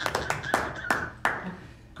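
A few hands clapping: an uneven run of sharp claps that thins out and stops about a second and a half in, with a man's voice faintly underneath.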